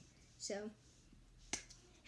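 A single sharp snap made with the hands, about one and a half seconds in.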